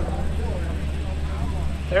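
Steady low rumble of the A-10 Thunderbolt II's twin high-bypass turbofan engines heard from a distance as the jet rolls along the runway.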